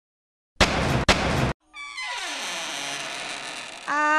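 Edited trailer sound effects: after a moment of dead silence comes a loud, noisy hit lasting about a second. It is followed by a sustained ringing sound whose low tone slides steadily downward in pitch.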